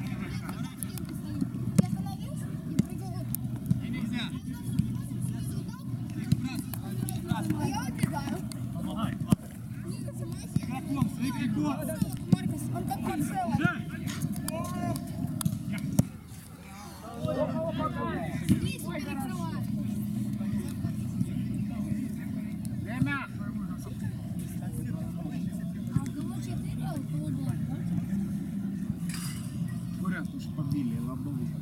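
Outdoor five-a-side football game: players shout and call to one another over a steady low rumble, with scattered sharp thuds of the ball being kicked. The background drops out briefly just past halfway.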